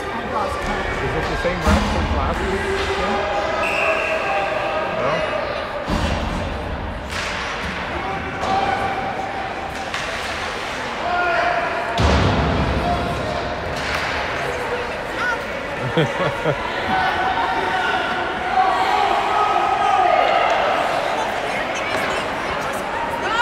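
Ice hockey arena sound: indistinct spectator voices and shouts echoing in the rink, with scattered sharp clacks and thuds of sticks, puck and the boards.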